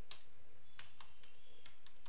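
Typing on a computer keyboard: a handful of separate key clicks, irregularly spaced, over a steady low background hiss.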